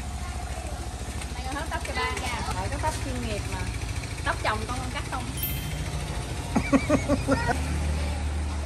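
Electric hair clippers buzzing with a steady low hum as they cut short white hair, the hum growing louder near the end.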